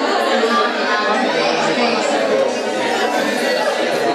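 Audience chatter: many people talking over one another at once, a continuous murmur of voices with no single speaker standing out.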